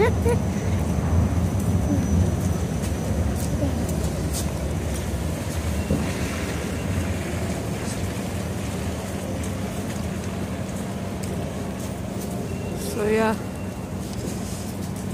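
City street noise: a low, steady rumble of traffic, with a bus driving by, that slowly eases off. A brief voice is heard near the end.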